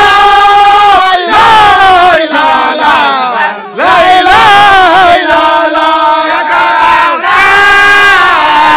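A man shouting into a handheld microphone in long, loud calls, each held for about a second and sliding down in pitch, over a crowd of men shouting around him.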